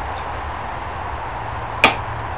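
One sharp hammer blow on a wedge driven into a yew log, near the end. It is the stroke of splitting the log along its length, over steady low background noise.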